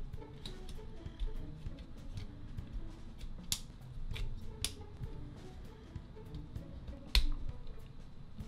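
Background music, over the sharp clicks and snaps of a Starscream Transformers action figure's plastic parts as it is folded and pegged together during transformation. Three louder clicks stand out, the loudest near the end.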